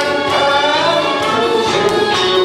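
A man singing into a handheld microphone over a loud recorded musical accompaniment, heard through a PA system.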